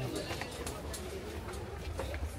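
Busy store ambience: a steady low hum under indistinct murmuring voices, with a few faint clicks.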